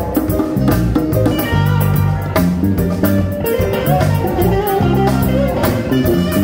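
Live band playing an instrumental passage: hand-played djembe and drum kit over a steady electric bass line, with electric guitar.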